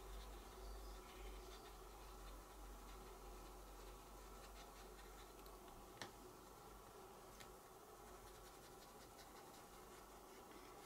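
Near silence with faint scratching of a small stencil brush working ink onto card, and a single faint click about six seconds in.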